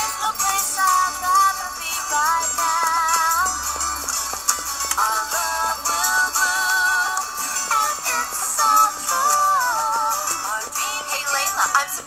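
Pop song with a wavering sung female melody over percussion, from a cartoon's soundtrack.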